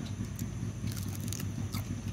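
A person chewing a mouthful of grilled quail: a few faint, short mouth clicks.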